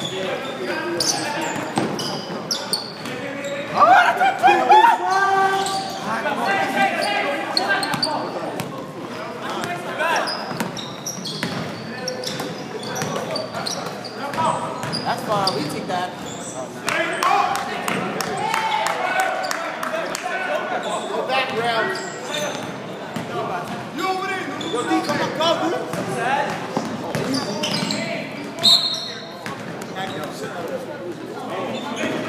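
Basketball being played on a hardwood gym floor, echoing in the large hall: the ball bouncing, footfalls and repeated short knocks, with players' voices calling out, loudest about four seconds in.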